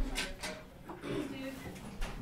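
An office door lock being undone and the latch clicking, a few sharp clicks near the start, with faint voices in the room.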